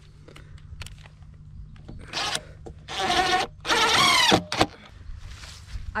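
Cordless drill driving screws through a steel corner bracket into timber: three short runs of the motor, starting about two seconds in, the last and loudest winding down in pitch as the screw seats.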